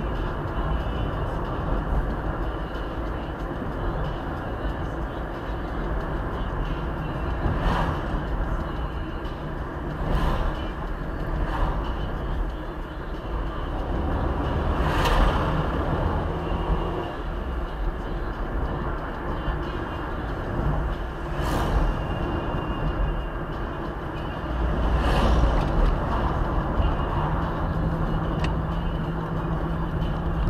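Car cabin noise while driving at about 40 km/h on worn, patched asphalt: a steady low rumble of tyres and engine, with several short knocks as the car goes over the uneven surface.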